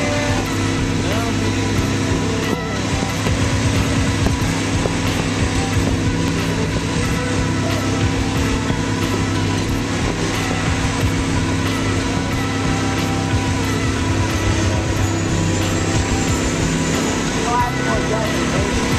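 Caterpillar 345BL hydraulic excavator's diesel engine running steadily under digging load, a constant low hum with a rumble underneath.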